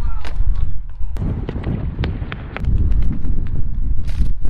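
Wind buffeting the camera microphone in a heavy low rumble, over a run of sharp footfalls and scuffs on tarmac during a parkour run-up and arm jump to a brick wall.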